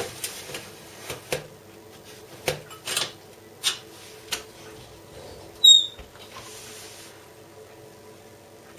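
A metal baking tray is slid onto an oven rack with a handful of light clicks and knocks. About five and a half seconds in, the oven door swings shut with a short high squeak and a thump.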